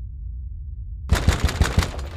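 Rapid, loud knocking on a glass door: a quick flurry of about six or seven raps starting about a second in, over a low rumbling drone.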